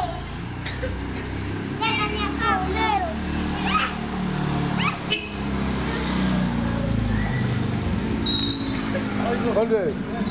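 Young children's high-pitched shouts and squeals, a few short calls with no clear words, over a steady low rumble that fades out about seven and a half seconds in.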